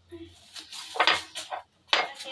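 Kitchen utensils clinking and scraping against bowls and dishes, a cluster of sharp knocks about a second in and one more just before the end.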